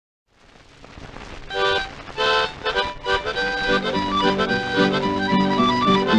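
Instrumental opening of a 1928 old-time string-band record, played from a 78 rpm disc with its surface hiss. A harmonica sounds two held chords about a second and a half in, then plays a running melody while lower string accompaniment comes in.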